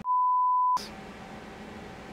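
A censor bleep: one steady high beep lasting about three quarters of a second, with all other sound cut out beneath it, bleeping out the bearing-bore dimension that is not to be disclosed. After it comes a faint steady background hum.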